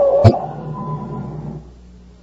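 Old-time radio sound effect of a truck coming to a stop: a brief squeal, a sharp thump just after the start, then the motor sound dying away over about a second and a half.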